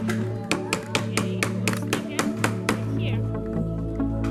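Background music with a quick, steady beat over sustained tones.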